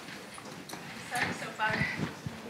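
Footsteps on a hard floor as a person walks up to a microphone, with faint speech in the second half.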